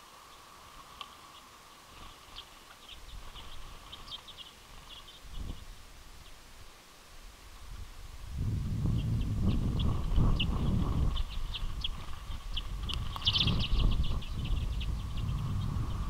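Common redpolls chirping, short high calls coming in quick bursts, sparse at first and thick in the second half, over a faint steady hum. From about eight seconds a louder low rumbling noise joins in.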